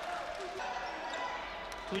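Quiet, steady gymnasium background noise from an indoor basketball court during a stoppage in play, with no sharp sounds standing out.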